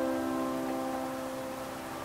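A single sustained keyboard chord, struck just before and slowly fading away: the background music.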